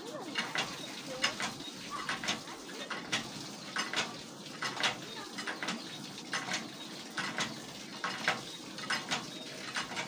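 Hand water pump being worked by its lever handle: a run of sharp metallic clanks from the handle and pump head, coming about once or twice a second in an uneven rhythm.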